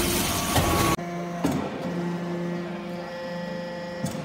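Scrap-metal chip briquetting press's hydraulic pump and motor running. A loud hissing hum drops abruptly to a quieter steady hum about a second in, with one sharp knock shortly after.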